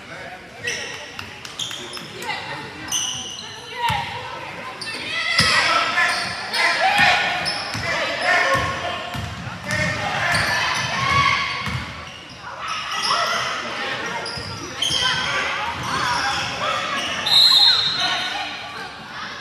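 A basketball bouncing on a hardwood gym floor during play, amid voices calling out, all echoing in the large hall. A brief high-pitched squeal comes near the end.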